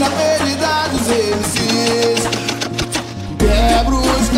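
Brazilian funk track: a melodic line over backing music, with a heavy bass coming in hard about three and a half seconds in.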